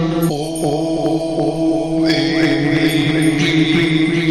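Devotional mantra chanting over a steady sustained drone, with a brighter high tone joining about halfway through.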